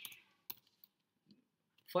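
Computer keyboard keystrokes while typing code: a sharp key click about half a second in and a fainter one shortly after.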